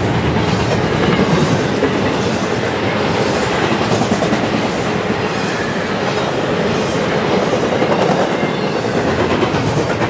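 A CSX double-stack intermodal freight train's well cars rolling past close by at speed: a loud, steady rumble and rattle of steel wheels on the rail, with a faint clatter repeating about once a second as the wheel trucks go by.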